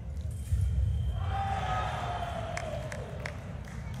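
A fencer's long shout after a touch in a foil bout, falling slowly in pitch, over crowd noise; a couple of sharp clicks near the end.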